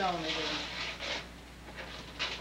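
Wrapping paper rustling and crinkling as a child unwraps a present by hand, after a voice trails off at the start.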